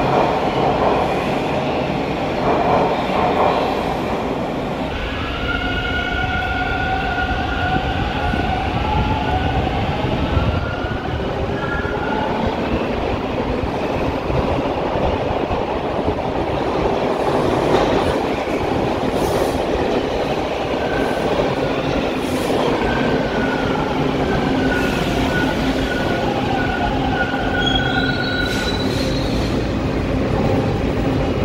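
TTC T1 subway train running along a station platform: a steady rumble of wheels on rail, with high whining tones that slide up and down and come and go twice.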